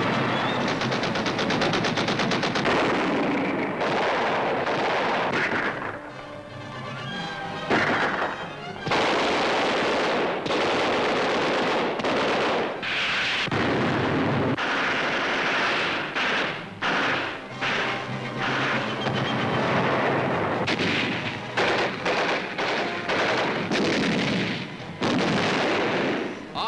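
Sustained battle gunfire: rapid machine-gun bursts mixed with single shots and heavier blasts, easing briefly about six seconds in before picking up again.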